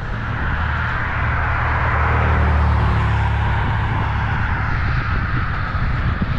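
A motor vehicle passing on the road, its engine hum and tyre noise swelling to a peak about halfway through, then easing off.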